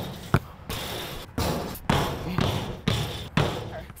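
A basketball bouncing on an asphalt court: a series of thuds about every half second, each dying away quickly.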